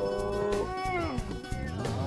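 Background music score: a wailing melodic line that slides up, holds long wavering notes, then falls away.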